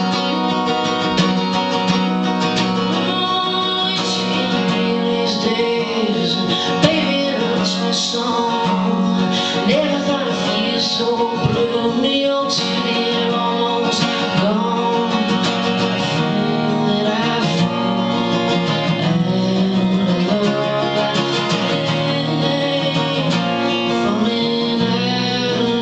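Acoustic guitar strummed steadily in a folk song, joined by a solo singing voice a few seconds in.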